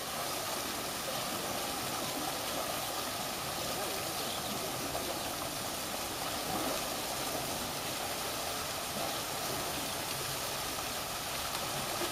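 Steady rushing of water from an artificial waterfall pouring down a rock face into a pool.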